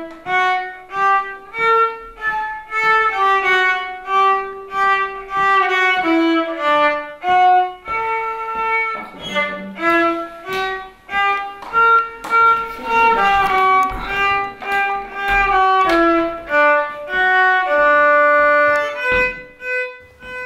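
A child's violin playing a lively dance tune in short, separated notes.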